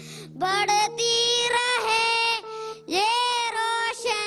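A young boy singing into a handheld microphone, drawing out long, sliding notes, with a low steady backing note under the first part.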